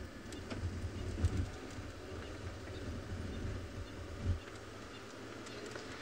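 Low, steady rumble of an open safari vehicle's engine as it drives slowly along a dirt track, with faint bird calls in the background.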